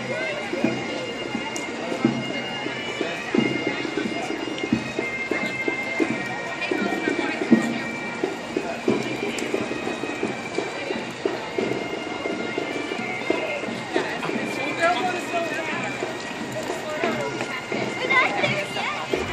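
Parade street sound: music with long held notes plays under the chatter of children and onlookers.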